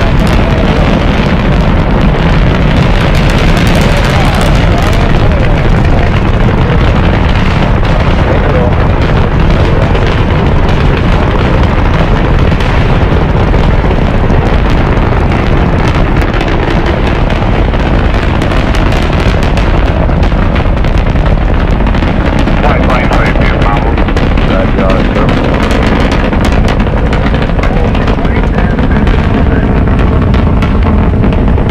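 The five F-1 engines of a Saturn V first stage at liftoff: a loud, continuous low roar laced with dense crackling.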